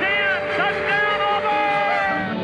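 Sportscaster's excited touchdown call ("He's in!") over a music bed, with long held notes carrying on after the call.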